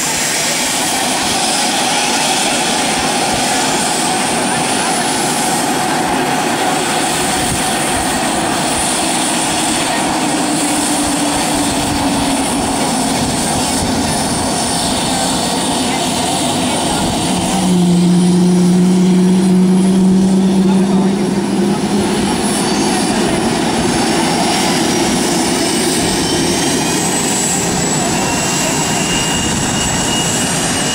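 Two-seat F/A-18 Hornet's twin jet engines running at idle, a loud steady rush of jet noise. Just past the middle a louder low steady tone sounds for about three seconds.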